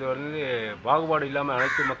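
A woman talking, answering an interviewer.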